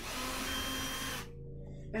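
A cordless screw gun runs for about a second as it backs out a short screw, then stops.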